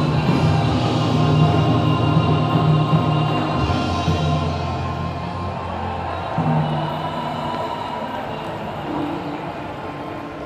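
Bon odori festival music over loudspeakers, with held pitched notes and a strong bass, getting gradually quieter over the second half.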